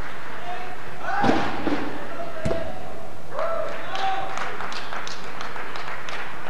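Two dull thumps, the first about a second in and the second about a second later, over voices echoing in a large hall, followed by a few light taps.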